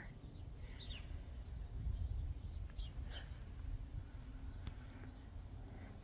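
A few faint, short bird chirps, scattered and irregular, over a steady low outdoor rumble.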